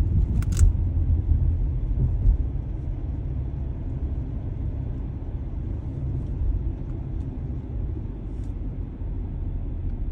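Steady low rumble of road and engine noise heard from inside a moving car's cabin, with a short sharp click about half a second in.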